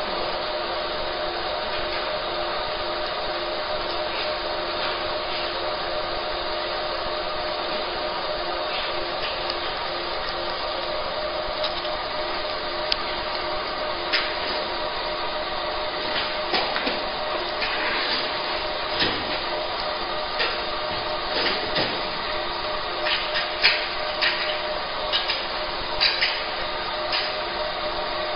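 A fiber laser marking machine runs with a steady fan-like hum that carries several steady tones. From about halfway through, a scatter of short sharp clicks and crackles rises above the hum.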